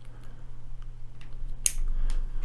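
Plastic cable connectors of a PoE splitter being fitted by hand to an IP camera's lead: a few faint ticks, then one sharp click about one and a half seconds in as a plug snaps home.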